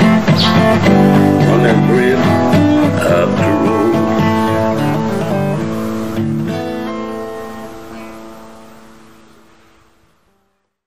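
Acoustic guitar playing the closing bars of a country-blues song. The strummed chords settle onto a final held chord about six and a half seconds in, which rings and fades away.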